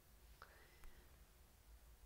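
Near silence: faint room tone, with two faint short clicks about half a second and one second in.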